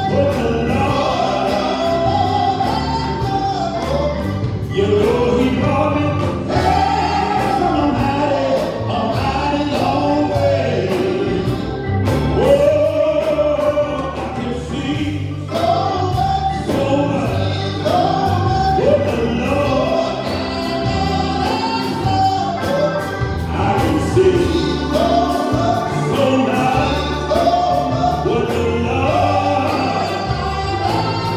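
Gospel music: a choir singing over instrumental accompaniment with a steady beat.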